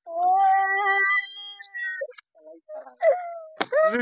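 A long, high, steady cat-like wail lasting about two seconds, followed by a few short fainter cries and a rising-and-falling cry near the end.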